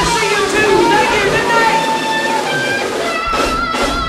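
Live blues band playing, with long bending notes held over the band and a run of loud drum and cymbal hits near the end.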